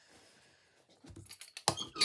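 A thin cloth rustling and crumpling as it is picked up and handled, starting about a second in and getting louder, with dense crackly clicks.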